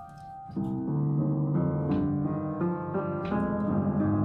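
Upright piano played with both hands. After a brief lull, low chords come in about half a second in and ring on, with a melody moving over them.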